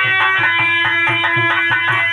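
Live Indian folk dance music: harmonium holding steady chords over a quick, even drum beat of about four to five strokes a second.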